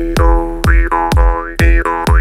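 Jaw harp twanging one steady drone, its tone sweeping up and down in a 'wah' over and over. Under it runs a programmed electronic drum beat of about two kicks a second.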